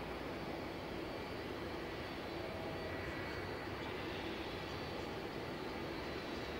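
Jet airliner's engines running as it taxis: a steady rumble with a faint high whine.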